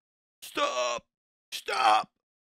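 A voice saying "stop" twice, each word drawn out to about half a second.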